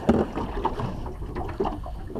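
Wind and water noise around a small aluminium boat on open water, with a sharp knock right at the start and a few small clicks after it.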